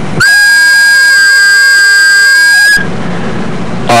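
A loud, steady whistle-like tone, held for about two and a half seconds and then cut off. Near the end a low, buzzy pitched sound with many overtones starts.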